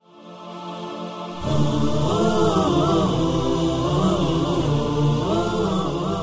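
Channel ident jingle: a held chord swells in, and about a second and a half in a wordless chanted vocal melody joins over a low drone.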